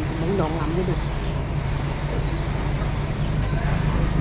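A low steady mechanical hum from a motor, under a person's voice in the first second.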